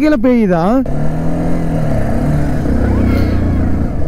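Motorcycle engine running at road speed, heard from the rider's seat, its low drone easing slightly down in pitch, with wind noise over it. A voice calls out in the first second.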